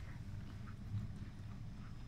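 Footsteps crunching in snow on a station platform, a few steps in a steady walking rhythm, over a steady low hum from electric trains standing at the platform.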